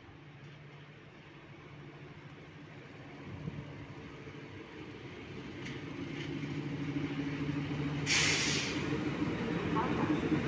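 SM42 diesel shunting locomotive's engine running, getting steadily louder as it approaches and draws level hauling flat wagons. A short loud hiss of air cuts in about eight seconds in.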